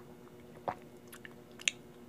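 Someone sipping and swallowing warm lemon water from a glass: a few short mouth and swallowing sounds, the clearest about two-thirds of a second in and another near the end, over a faint steady hum.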